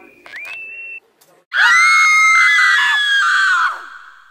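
A girl screaming, one loud, high-pitched scream held for about two seconds and falling away at the end, in a staged school-shooting scene. Just before it, in the first second, a short high whistled note slides up.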